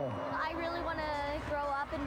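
Speech in a high-pitched voice.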